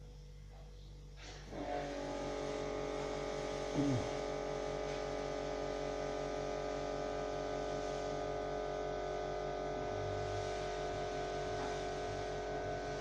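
A CO2 laser machine's electrical hum: a low steady buzz, joined about one and a half seconds in by a louder steady hum of several tones as equipment in the machine switches on. A short falling "mm" from a person comes about four seconds in.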